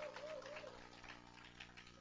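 A young child's faint babbling: a few short rising-and-falling sounds in the first second, then quiet room tone.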